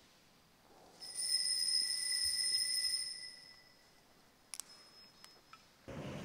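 A small altar bell struck once about a second in, giving a clear, high ring that lasts about two seconds and then fades. Two faint clicks follow near the end.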